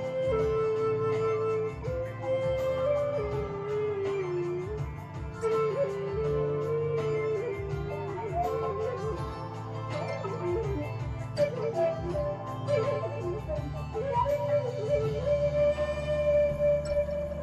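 Native American flute playing a slow solo melody of long held notes with small slides between pitches. In the second half it moves into quicker ornamented flourishes, then settles on a long held note near the end.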